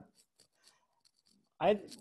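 A man's speech breaking off into a pause of about a second and a half that holds a few faint, short ticks, then his voice resuming near the end.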